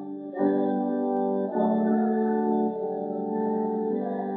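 Organ playing a hymn in sustained chords, moving to a new chord every second or so.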